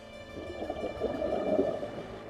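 Scuba diver exhaling through a regulator underwater: a bubbly, burbling rush of air that swells for about a second and a half, over background music.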